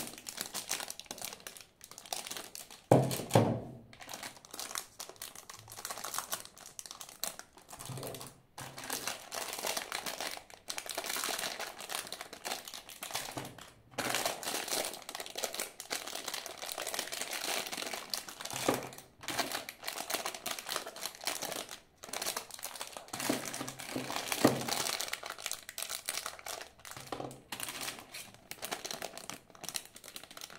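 Clear plastic parts bags crinkling and rustling as hands handle bagged CaDA motors, cables and a battery box, with a couple of louder knocks.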